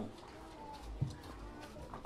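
Quiet pause in a church service: faint room sound with a low rumble and a single soft knock about a second in.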